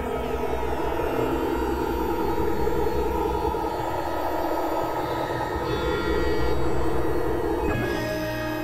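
Dense layered experimental electronic music: many sustained droning tones stacked over a pulsing low rumble, with several tracks sounding at once. A quick falling pitch sweep comes just before the end as the texture changes.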